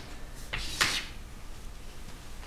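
Chalk scraping across a chalkboard in two quick strokes about half a second apart, the second louder, as lines are ruled on a table.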